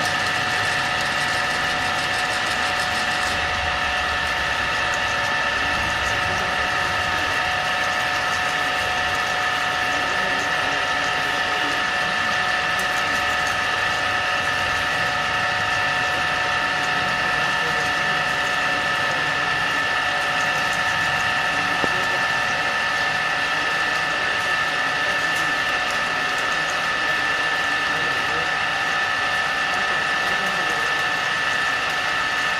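8-axis CNC drilling machine running in automatic mode, drilling pitch-circle holes in a cast housing: a steady machine whine made of several held tones, unchanging in level.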